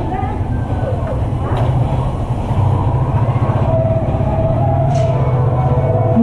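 Steady low rumble of a motor vehicle's engine running, with faint voices in the background.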